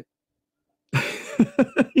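A man's short laugh starting about a second in: a breathy burst of air, then a few quick chuckles.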